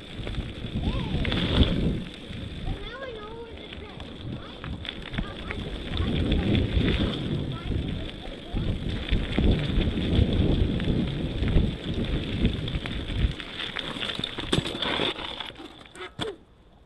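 A mountain bike ridden along a dirt trail: rumbling tyre and wind noise with the rattle of the bike over bumps, swelling and easing with speed. The noise drops away abruptly at the very end as the bike stops.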